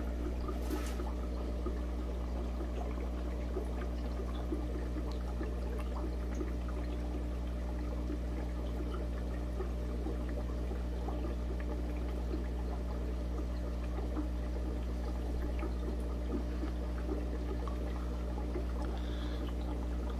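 Air-driven aquarium sponge filters bubbling and trickling steadily, over a constant low hum.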